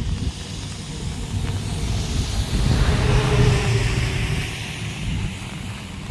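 A vehicle passing on a nearby road, its noise swelling to a peak about three seconds in and fading again, over a low wind rumble on the microphone.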